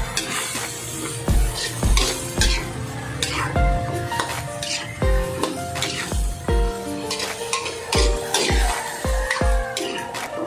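Background music with a steady drum beat and melody, over a spatula stirring diced bottle gourd (upo) that sizzles in oil in a frying pan.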